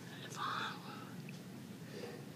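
A person's whispered, unvoiced mouth and breath sounds, the strongest a short breathy burst about half a second in, over a low steady hum.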